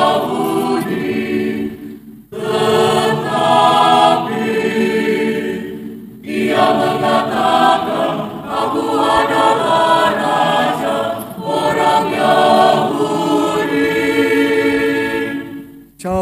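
A choir singing the chief priests' lines of a chanted Good Friday Passion, in Indonesian. The singing comes in phrases with short breaks about two and six seconds in.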